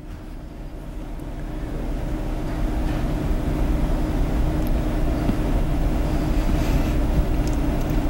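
A low, steady rumble with a faint hum, growing louder over the first two seconds and then holding.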